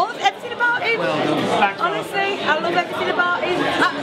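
Speech only: several people talking at once, in animated chatter.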